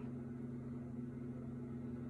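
A steady low hum under faint room noise.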